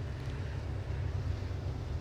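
Steady low rumble of outdoor background noise with a faint even hiss above it, with no distinct events.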